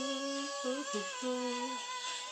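A woman singing a slow phrase of long held notes, soft and close to humming.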